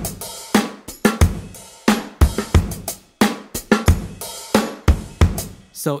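Sampled drum-kit loop playing back from Maschine: kick, snare and hi-hats in a steady beat, which stops just before the end.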